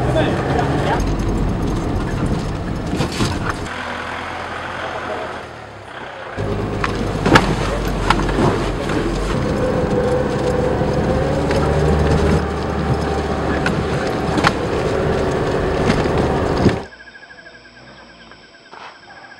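Vehicle driving on a rough dirt track, heard from inside: steady engine and road rumble with frequent knocks and rattles from the bumps. It briefly quietens a few seconds in and cuts off suddenly near the end.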